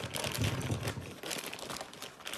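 Crinkly plastic candy packaging handled and tipped out, with an irregular crackle and short sharp clicks as the packaged jelly fruit candies drop into a glass bowl.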